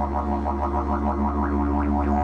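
Didgeridoo played with a steady low drone, the tone swept up and down in a rhythmic wah-wah pattern about five times a second.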